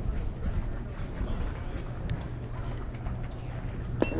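Open-air ballpark ambience: faint, scattered voices of spectators over a steady low rumble, with a faint click about two seconds in.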